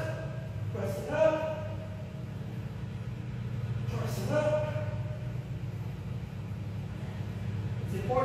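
A man's voice sounds briefly twice, about a second in and again about four seconds in, over a steady low hum.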